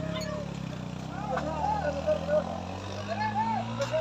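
A vehicle engine running, its pitch slowly rising through the second half, with voices calling out over it.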